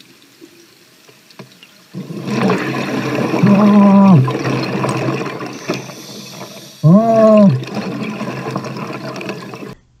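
Underwater audio of a scuba diver breathing through a regulator. After about two seconds of quiet there is a long rush of bubbling noise, twice carrying a short hum that rises and then holds steady.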